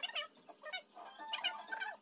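Music laid over the scene, a high melodic line with a held note in the second half.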